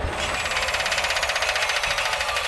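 A rapid, even mechanical rattle or buzz of about fourteen pulses a second, thin and without any bass, from the soundtrack of an animated title sequence.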